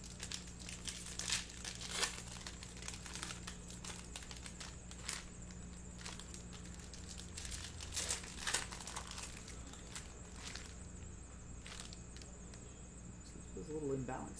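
Foil trading-card pack wrappers crinkling and being torn open by hand, in scattered crackles that are busiest about two seconds in and again around eight seconds.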